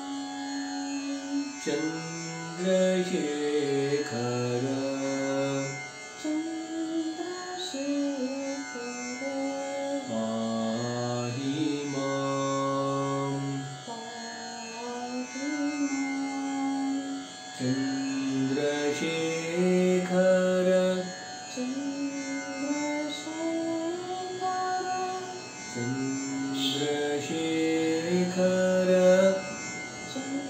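Slow Indian classical devotional singing in raga Pilu: held notes that step and glide from pitch to pitch every second or two, over a steady drone.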